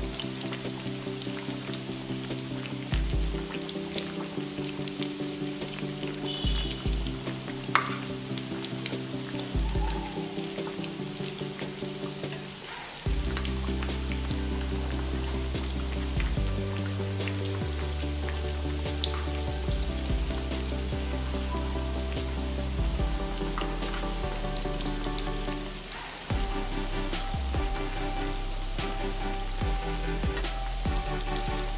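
Hot oil sizzling and bubbling as vermicelli-coated potato nuggets deep-fry in a pan. Background music plays over it and grows louder about halfway through.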